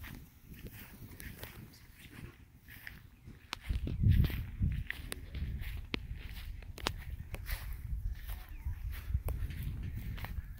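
Footsteps on grass, with scattered light clicks and a low rumble that swells about four seconds in.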